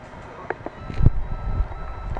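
Handling noise: a light click, then a dull thump about a second in followed by low rumbling, as a small USB webcam on a metal stem is picked up and moved about on a desk.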